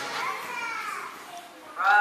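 Young children's voices, one high child's voice calling out, rising and then falling in pitch. Near the end, loud music with held sung notes starts suddenly.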